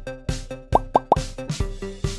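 Upbeat background music with a steady beat, with three quick rising 'plop' sound effects in a row about three-quarters of a second in.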